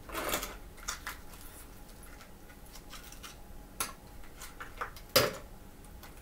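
Ice cubes being worked out of a plastic ice tray and dropped into a blender jar: a crackle at the start, then scattered clinks and knocks, the loudest about five seconds in.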